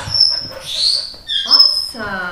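Excited dog whining in a few short, high-pitched squeals, one rising in pitch.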